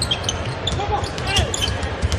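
A basketball being dribbled on a hardwood court, with repeated low thuds and a few short sneaker squeaks over steady arena crowd noise.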